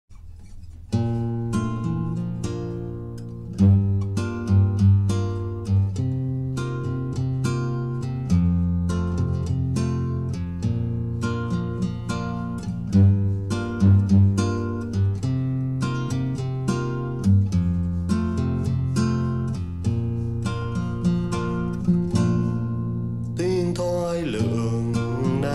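Instrumental song intro on guitar: a steady run of picked notes over held bass notes, starting about a second in.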